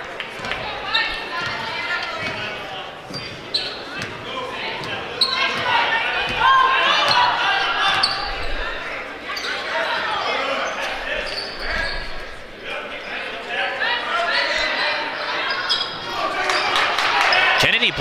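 Basketball bouncing on a hardwood gym floor, with players' and spectators' voices echoing in the gym.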